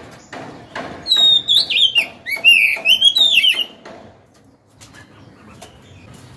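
Oriental magpie-robin singing: a loud burst of varied, gliding whistled phrases from about a second in until near the four-second mark. A few short knocks and rustles come before it.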